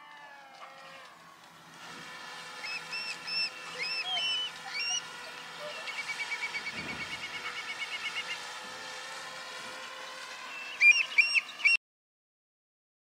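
Birds calling over the flats, with short repeated chirps, a rapid trill in the middle and the loudest sharp calls near the end. Under them runs the steady whine of a small quadcopter drone flying overhead. The sound cuts off suddenly just before the end.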